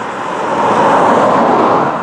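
A road vehicle passing close by, its tyre and road noise swelling up loud and steady.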